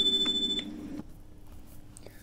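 Exam chime: a single high electronic tone that marks the end of a recorded dialogue segment and cues the candidate to begin interpreting. It sounds for about half a second and then fades out by about a second in.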